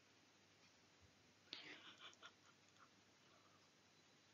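Near silence: faint room tone, with a brief cluster of faint clicks and soft hissy noise about a second and a half in.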